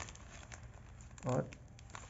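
Faint crinkling and a few small clicks from a balloon and a plastic pipe being handled as the pipe is pushed in.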